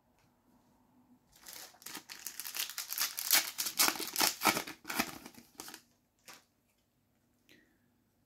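A Panini FIFA 365 Adrenalyn XL foil card pack torn open and crinkled by hand, a dense crackling that starts about a second and a half in and runs until nearly six seconds in, followed by one short click.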